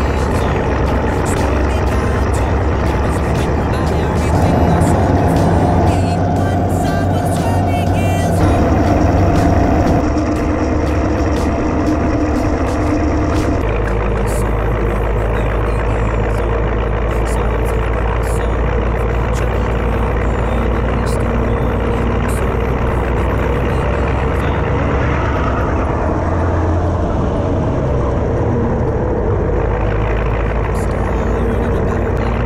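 Hudswell Clarke No. 36 diesel shunting locomotive's engine running as the loco moves along the line, its note shifting a couple of times, about ten and fourteen seconds in.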